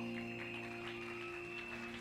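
The last held chord of a song's accompaniment, sustained and slowly fading away at the end of the song.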